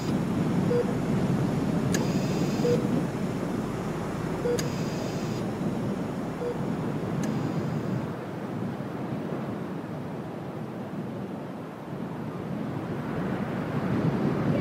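A low, steady rumbling drone, with faint short pips about every two seconds during the first half. It eases off around the middle and swells again near the end.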